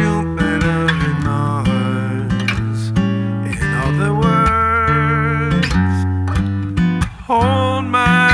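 Solo acoustic guitar played on a Martin dreadnought, accompanying a man singing a slow jazz-standard melody.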